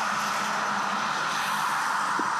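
Steady road-traffic noise from trucks and cars, an even hiss and hum with no separate events.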